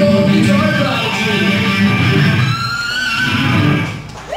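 A live heavy metal band playing loud electric guitars over bass guitar and drums, breaking off near the end.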